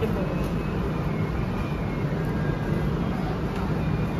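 Steady low hum and rumble of restaurant kitchen background noise, with no distinct strikes or clatter.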